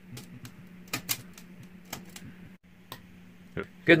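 Scattered, irregular light clicks and taps from a bathroom wall light's switch being handled, over a steady low electrical hum.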